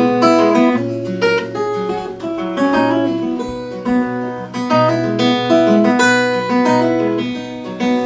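Acoustic guitar playing an instrumental passage: single picked notes moving up and down, with a few strummed chords.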